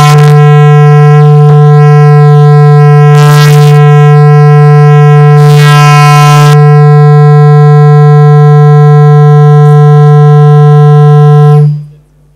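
A loud, steady buzzing tone, low-pitched and rich in overtones, held without change for about twelve seconds and then cut off suddenly; two short bursts of hiss sound over it, about three and six seconds in. It works as a wake-up signal for the room.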